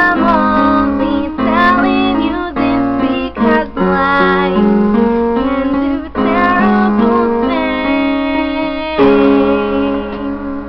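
Piano playing sustained chords that change every second or so, with a woman singing the melody over them.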